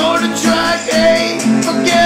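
Instrumental passage of a song, led by guitar with a steady strum.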